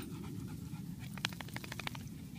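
A small terrier breathing rapidly with its nose down. About a second in there is a quick run of short, sharp breaths, some eight or nine in under a second, over a steady low rumble.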